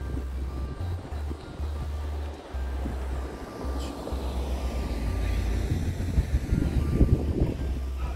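Background music with a repeating bass line and held synth notes, overlaid by wind noise on the microphone that grows louder in the second half.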